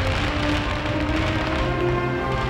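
Music with held notes over a dense crackle and low rumble of fireworks bursting.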